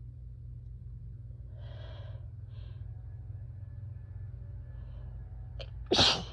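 A person's allergic sneeze brought on by freshly mown grass: two short breaths drawn in about two seconds in, a quick catch of breath, then one loud sneeze right at the end.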